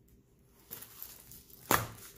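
Folded plastic-covered diamond-painting canvas rustling as it is unfolded, then one sharp slap near the end as it is laid flat on the wooden floor.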